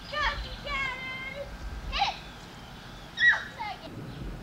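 Children's high-pitched calls and shouts, a few short ones, the loudest about three seconds in.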